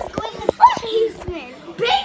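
Children's voices talking and exclaiming, with a few short knocks in the first second and a half.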